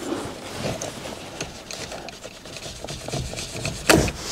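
Hands working push-on earth wire connectors off the back of a car steering wheel. There is rubbing and scraping with a few faint clicks, then a sharp click near the end as a connector comes free.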